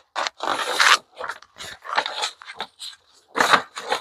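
Spyderco Yojimbo 2 folding knife slicing through thin phone-book paper: a run of short, uneven cutting strokes and paper rustles.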